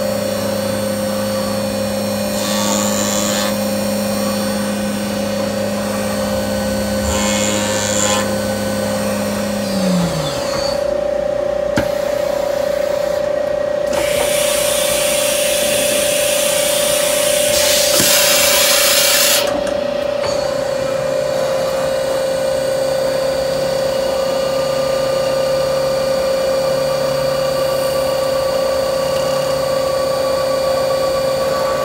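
CNC machining center running a chamfering cycle with a carbide chamfer tool, first on the top of the holes and then backside chamfering: a steady spindle whine. A lower tone falls away about ten seconds in, with short hissing bursts before it and a longer, louder hiss about two-thirds through.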